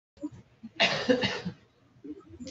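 A short, breathy burst from a person's voice about a second in, lasting about half a second, like a cough or a laugh.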